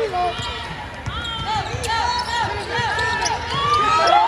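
A basketball being dribbled on a hardwood court, with sneakers squeaking repeatedly as players run and cut.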